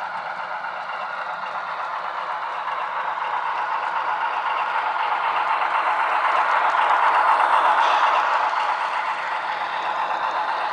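N scale model train, an Alco PA diesel pulling hopper cars, running on the track with a steady rattling clatter of wheels and cars. It grows louder to a peak about seven seconds in as the cars pass close, then eases a little.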